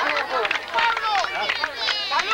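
Several voices talking and calling out over one another, like a crowd's chatter.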